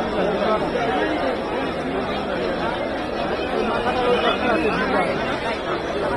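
Crowd chatter: many voices talking over one another at a steady level, with no single speaker standing out.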